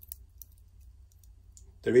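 A few faint, light clicks from the links of a stainless steel watch bracelet being flexed between the fingers, mostly in the first half-second.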